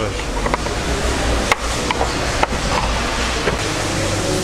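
Several sharp metallic clicks as a screwdriver pries at a rusted-in rear shock-absorber bolt in its steel mounting bracket, over a steady noisy garage background with a low rumble.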